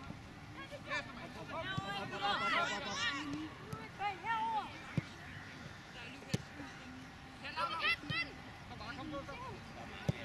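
Youth footballers shouting and calling to each other across an open pitch, in scattered bursts, with a few short knocks of the ball being kicked.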